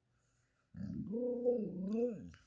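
A Siberian husky "talking": one drawn-out vocal sound, about one and a half seconds long, starting about three quarters of a second in and falling in pitch at the end. It is her imitation of the command "roll over", given instead of doing the trick.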